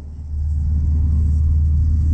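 Steady low drone of a car at road speed heard from inside the cabin, engine and tyres on a wet road, fading up quickly at the start.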